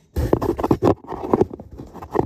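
A hand knocking and rubbing against cardboard and the phone right at the microphone, giving a rapid, irregular run of knocks and scrapes in two clusters.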